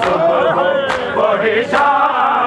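Men chanting a noha together in unison, with loud, regular chest-beating (matam) slaps on the beat, about one a second, three strikes in all.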